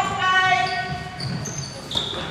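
Basketball shoes squeaking on a hardwood court in short, high-pitched squeals, with players' voices echoing in the gym.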